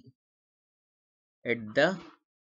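Silence for about a second and a half, then a voice speaking two words near the end.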